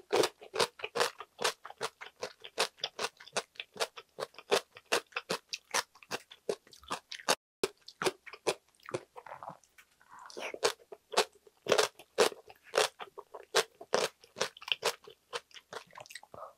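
Close-miked chewing of crisp radish kimchi: a steady run of sharp crunches, a few a second.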